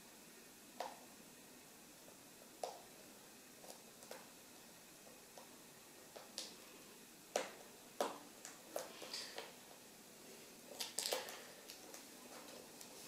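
Scattered small clicks and taps of fingers handling a laptop display cable and its connector at the back of an LCD panel, over faint room tone. The clicks are sparse at first and come closer together in the second half, with a short cluster near the end.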